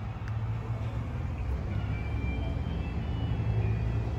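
Steady low hum of a car engine idling.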